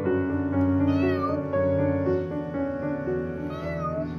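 A domestic cat meowing twice, once about a second in and again near the end, each a short call that rises and falls, over steady background music.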